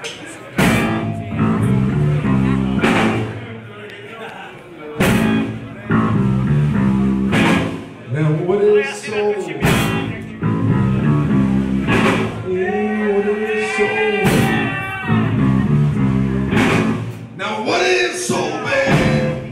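A blues band playing live with electric guitars, bass and drums: a repeating low riff under strong accents about every two and a half seconds, with a lead line bending in pitch midway through.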